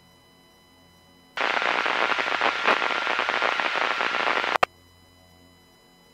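A burst of loud crackling static-like noise starts suddenly, lasts about three seconds, and cuts off abruptly with a click.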